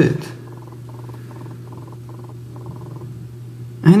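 Low steady electrical hum with a faint buzzing that pulses in short irregular bursts, typical of a GSM mobile phone's radio interference picked up by the recording microphone while the BlackBerry downloads a photo over the network.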